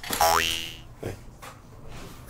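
A short cartoon-style 'boing' sound effect: a pitched tone gliding quickly upward for about half a second, near the start.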